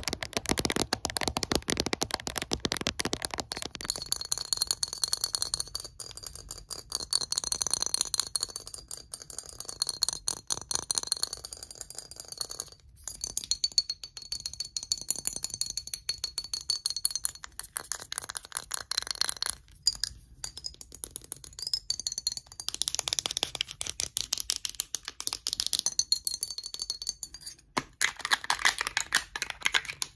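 Fingernails tapping and scratching fast on a glass perfume bottle and its cap: a dense, unbroken run of clicks and scrapes. A high, wavering ringing tone sounds under it for much of the time.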